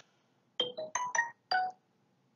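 Short electronic jingle: a quick run of about five brief musical notes, a transition sound effect between lesson slides.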